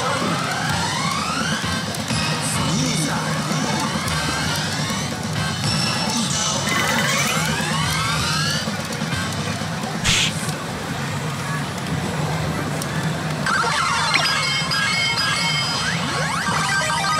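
Pachinko machine's reach sequence: electronic music with rising sweep effects that repeat every few seconds, and one sharp hit about ten seconds in.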